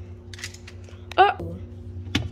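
Light clicks and taps of small plastic toy trains being handled on a refrigerator shelf over a steady low hum, with one brief vocal squeak a little past a second in and a sharper click at the end.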